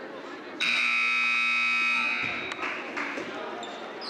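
Gym scoreboard horn sounding once, a loud steady tone lasting about a second and a half, as the game clock runs out at the end of the period.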